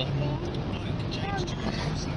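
Steady low engine and road noise inside a moving car's cabin, with quiet voices over it.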